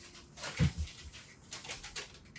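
Papers and envelopes rustling as a stack of mail is handled, with a short low groan falling in pitch about half a second in.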